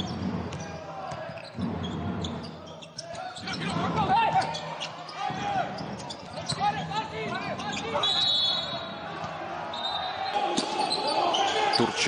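Basketball game sound in an arena hall: the ball dribbling, sneakers squeaking on the hardwood court, and crowd voices, all echoing in the hall.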